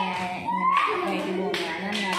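Children's excited voices calling out during a running game, with two sharp claps, one near the middle and one about three-quarters of the way through.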